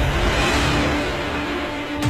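Volvo FH16 truck's diesel engine revving hard under heavy load as it starts to pull a 750-ton road train of 20 trailers; the rumble swells again near the end.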